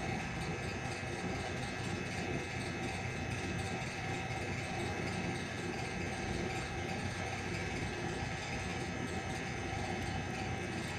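Steady background room noise: a constant hum and hiss with a few faint steady tones, unchanging throughout.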